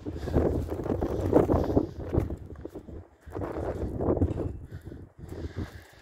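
Footsteps crunching on dry dirt and bark mulch, in two stretches of steps with a short pause about halfway.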